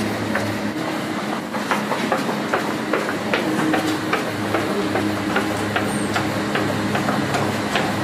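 Scattered light clicks and knocks of utensils and trays from hand-wrapping dumplings, over a steady low hum.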